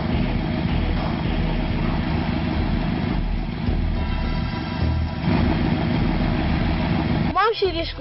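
Engine of a Mahindra Scorpio SUV running steadily with a low rumble. A child's voice starts near the end.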